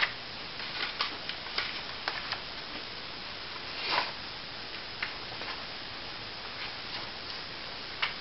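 Pages of a paper workbook being flipped by hand, several at a time: scattered light ticks and rustles of paper, with a longer, louder rustle about four seconds in.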